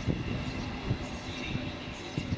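Freight train rolling past: a low rumble with irregular knocking of wagon wheels on the track.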